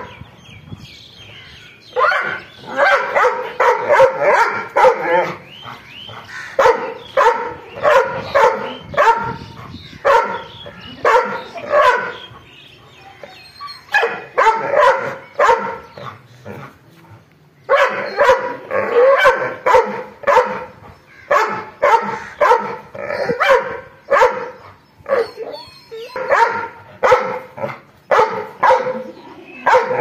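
A dog barking angrily in fast runs of several barks, with brief pauses between the runs.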